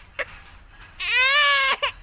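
A toddler crying: a short sob about a quarter second in, then one loud wail about a second in that rises and falls in pitch, ending in a quick catch of breath.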